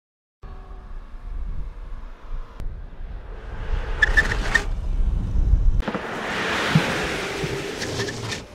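Wind rumbling on the microphone beside a road, then a car driving past with a swelling rush of tyre and road noise over the last two seconds.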